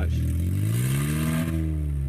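Kia Sportage engine revved once through an exhaust with its catalytic converter cut out, the pitch rising and falling back. The exhaust is very loud because the converter has been stolen.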